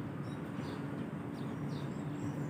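Birds chirping: a few short, high calls that drop in pitch, over a steady low background hum.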